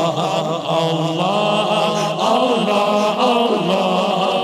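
A man singing a naat, the Urdu/Punjabi devotional poem, into a microphone: one voice drawing out long, ornamented notes that glide up and down in pitch.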